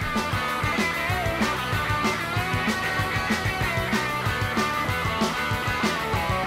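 Rock band music: electric guitars playing over a steady drum beat, in a punk-tinged rock-and-roll style.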